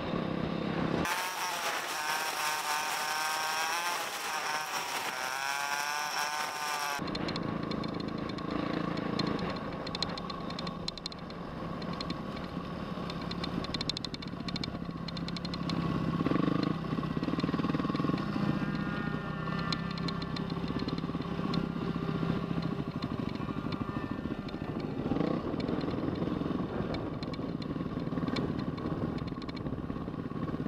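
Off-road motorcycle engine running under way, its note rising and falling with the throttle. About a second in, the sound turns thin and high with a wavering whine for some six seconds before the fuller engine sound returns.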